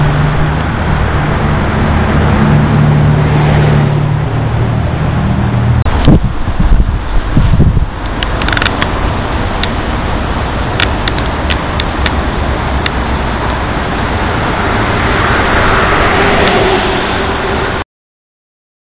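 A motor vehicle's engine running with a steady low hum for the first several seconds, then a few seconds of louder irregular rumbling and knocks, followed by steady street noise with scattered sharp clicks. The sound cuts off abruptly just before the end.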